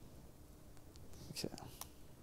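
Quiet room tone with a single faint click of a laptop key near the end.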